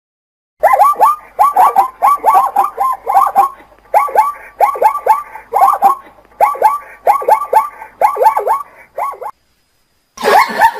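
Plains zebra barking: a rapid run of short, high yelping calls in clusters of two or three, starting about half a second in and stopping shortly before the end.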